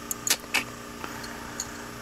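A few light clicks and ticks of small parts and wiring being handled, over a steady low electrical hum.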